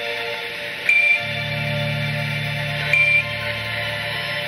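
Sustained synthesizer chords, with a low bass drone coming in about a second in. Two short, high radio beeps sound about two seconds apart: the Quindar tones of Apollo mission-control radio, from a launch-countdown recording.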